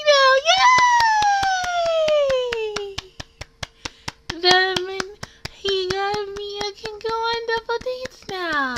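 Hands clapping quickly and evenly, about four claps a second. Over the claps a high-pitched woman's voice gives a long falling squeal in the first few seconds, then several short, held high notes.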